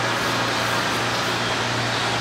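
Steady machine hum with an even hiss over it, the constant drone of running equipment such as a fan or blower.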